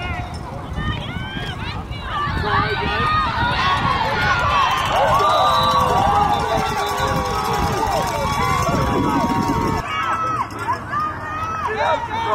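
Football spectators shouting and cheering during a play, many voices overlapping, swelling about two seconds in and easing off near the end.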